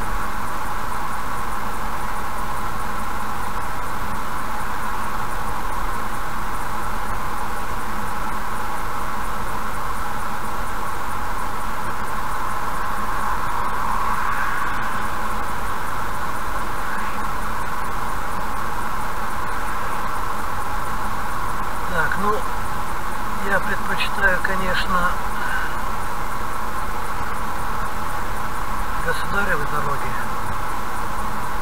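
Steady in-cabin road and tyre noise of a car cruising on a highway at about 75 km/h, an even drone with no change in pace. A few brief higher-pitched sounds come through around 22 to 25 seconds in and again near the end.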